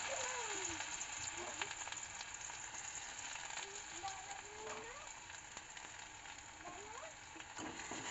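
Chopped garlic and ginger sizzling in hot oil in a wok: a steady crackling hiss that slowly grows a little quieter.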